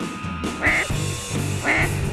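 Handheld duck call blown in quacks, with two sharp, raspy notes about a second apart, over background music.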